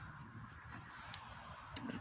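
Faint crumbling and rustling of garden soil as a hand sprinkles it over a planting hole, with a small click near the end.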